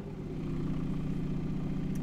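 Voxon Photonics VX1 volumetric display running with its protective dome off: a steady hum and rush of turbulent air from its screen resonating up and down at 15 Hz. It grows slightly louder in the first half second, then holds steady.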